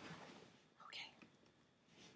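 Near silence, with a brief faint whisper about a second in.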